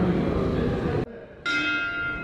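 Boxing-ring bell struck once about one and a half seconds in, a bright metallic ring that slowly dies away, signalling the start of the round. Before it, the murmur of voices in a large hall.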